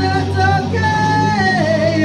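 Two guitars strummed in a live duo while a voice holds long, wordless sung notes that slide from one pitch to the next.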